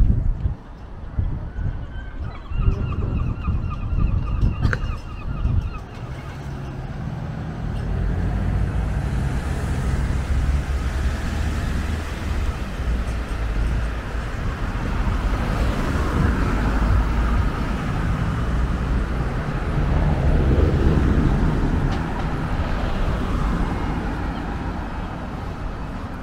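Road traffic: cars passing close by on a town street, a steady low rumble and tyre noise that swells as vehicles go past, loudest about twenty seconds in. About three seconds in, a brief honking call sounds for a couple of seconds.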